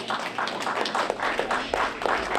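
Audience applauding, a dense patter of many hands clapping.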